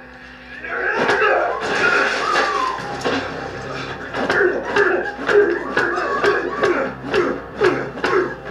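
Soundtrack of a TV fight scene: repeated sharp hits and scuffling, with men's voices grunting and shouting. It starts about a second in after a brief quiet moment.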